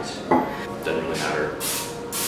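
A knock of a wooden rolling pin set down on the counter near the start, then a short hiss of aerosol cooking spray into a metal loaf pan about a second and a half in.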